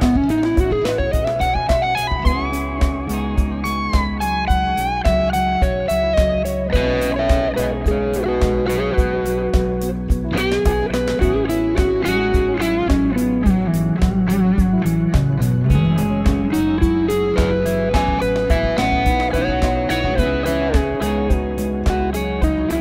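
Semi-hollow electric guitar playing a melodic lead line with slides and bent notes, over a backing track with a steady drum beat.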